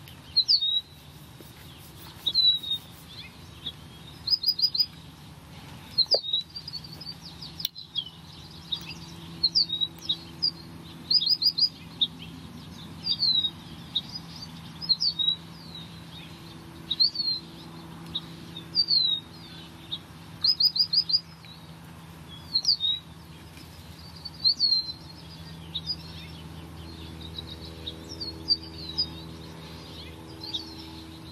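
A songbird chirping over and over: short, high, down-slurred notes, often in quick runs of three or four, repeating about every two seconds. A faint steady low hum runs underneath.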